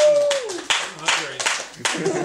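A sung note held at the end of a song and sliding down in pitch, then a small group of people clapping irregularly.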